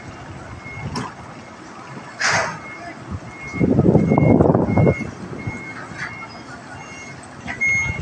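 A truck's reversing alarm beeping, a single high tone repeated a little under twice a second. A louder rush of low noise about three and a half seconds in, lasting over a second.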